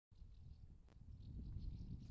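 Near silence: a faint low rumble with a faint steady high whine, and one soft click just before a second in.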